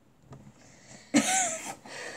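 A girl's short, breathy laugh about a second in, followed by softer breath noise.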